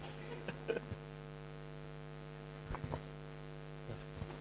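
Steady low electrical mains hum with a faint buzzing edge, with a few faint short sounds about half a second in and again near three seconds.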